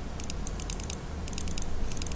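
Computer keyboard keys clicking in a quick, irregular run, about a dozen light presses over two seconds, over a steady low hum.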